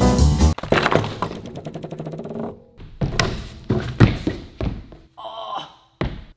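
Background music cuts off about half a second in. Then a stunt scooter rolls on a wooden ramp surface and lands with a few heavy thuds, and there is a short vocal sound near the end.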